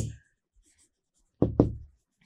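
Chalk writing on a board: faint scratching strokes, with two dull knocks about a second and a half in, a fifth of a second apart.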